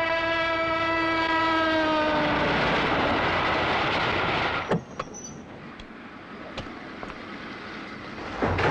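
Train horn sounding one long note that sags slightly in pitch as it ends, over the rumble of a passing train. The rumble cuts off about four and a half seconds in, leaving a quieter stretch with a few sharp clicks.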